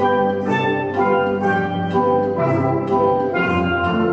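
Steel pan ensemble playing: lead pans struck with mallets in ringing chords that change every second or so, over notes from the large barrel bass pans.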